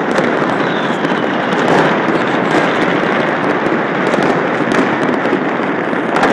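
Many fireworks and firecrackers going off at once across a city, a dense, steady crackle of countless bangs and pops that merge into one another with no gaps.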